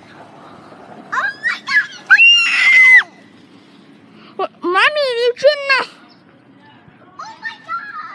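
A child's high-pitched shouts and screams without clear words, including one long held shriek about two seconds in, then two more bursts of yelling later on.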